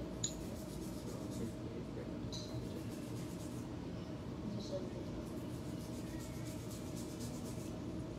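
Acrylic nail brush being dipped into a jar of powder and pressed and stroked along a nail, giving faint scratchy brushing with a sharp little tap just after the start and a couple of softer ticks, over steady low room noise.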